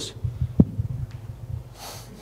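A man's short breath out through the nose, like a stifled laugh, near the end, after a sharp low thump about half a second in.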